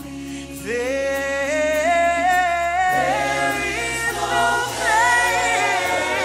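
Gospel worship choir singing in harmony into microphones, holding long notes that climb step by step, over low sustained notes beneath. The singing swells louder about a second in.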